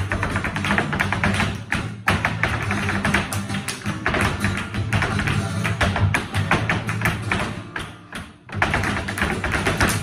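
Flamenco dancer's rapid zapateado footwork, boot heels and soles striking the stage floor in fast runs of beats, with flamenco guitar underneath. The footwork drops away briefly just past eight seconds, then comes back.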